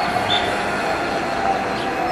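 A parked coach bus's engine idling: a steady hum with a faint high whine.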